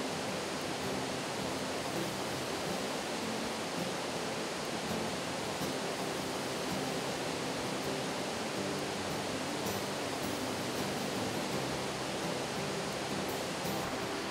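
Steady rushing of a river flowing close by, even and unbroken.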